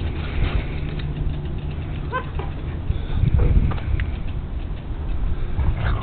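Siberian husky puppy letting out a short, high yip about two seconds in while play-fighting with an adult husky, over a low steady rumble and the rustle and bumping of the two dogs scuffling on a mat.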